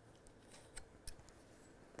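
Near silence with a few faint clicks, between about half a second and a second in, from small camera-control units being handled.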